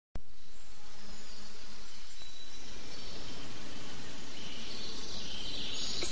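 Steady woodland ambience of buzzing insects, with a high hiss that swells near the end.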